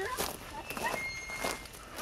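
Footsteps on dry grass and dirt, a few irregular steps, with a voice calling a name in between.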